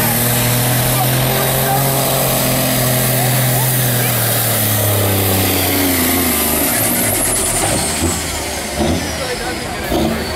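Diesel engine of a cabover semi tractor running hard under load as it pulls a weight sled, then dropping off about six to seven seconds in as the pull ends. A high whine falls steadily in pitch over the last few seconds.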